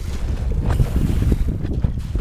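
Gusty wind buffeting the microphone in an uneven low rumble, over water rushing and splashing along the hull of a small sailboat under way.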